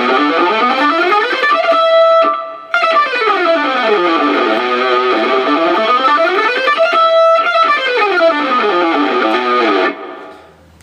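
Electric guitar playing a fast economy-picked run of single notes through a hexatonic A minor scale shape over three octaves. It climbs to a briefly held top note and runs back down, twice over.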